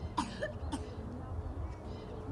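Three short vocal sounds from a person, like a cough or brief utterance, in the first second over a steady low background rumble.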